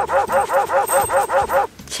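A quick run of about ten short dog-like yips, roughly six a second, each rising and falling in pitch, voiced for a Chain Chomp puppet acting as a dog; they stop a little before the end.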